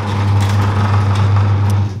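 A loud, steady low mechanical hum, like an engine running at idle, that cuts off abruptly near the end.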